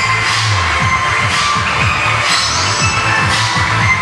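Electronic dance music with a steady beat and a deep bass that keeps sliding down in pitch in quick repeated drops.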